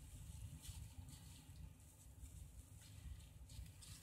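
Near silence: faint room tone with a low hum and a few soft, faint ticks.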